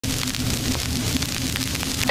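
Vinyl LP surface noise as the turntable stylus runs in the lead-in groove: a steady crackle with scattered small clicks and pops and a low hum underneath.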